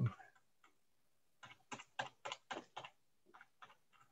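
Faint, quick run of short clicks from a computer as a web page is scrolled: about eight clicks in the middle, then a couple more near the end.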